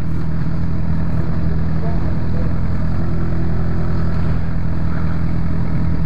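Motorcycle engine running steadily at low speed as the bike is ridden, a continuous low hum heard from the rider's seat.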